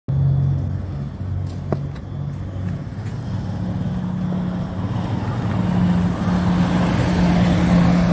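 Small motorcycle engine running and drawing near, its steady engine note growing louder over the last few seconds.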